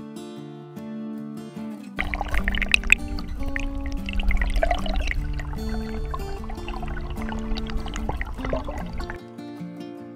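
Acoustic guitar background music throughout. From about two seconds in until shortly before the end, the louder rushing, bubbling noise of swift river water heard through an underwater camera joins it, with a deep rumble, and cuts off suddenly.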